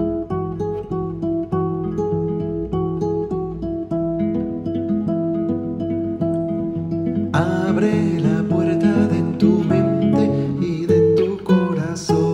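Instrumental music led by plucked acoustic guitar, its notes at an even, unhurried pace. About seven seconds in, a fuller, brighter accompaniment joins and the music grows slightly louder.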